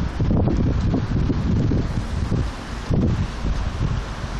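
Wind buffeting a phone's built-in microphone outdoors: a loud, uneven low rumble that swells and dips in gusts.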